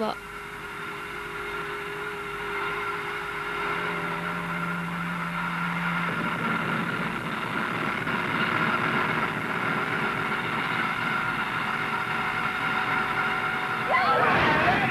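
Steady droning background music of held chords that swells slowly, with a low note held for a couple of seconds near the middle.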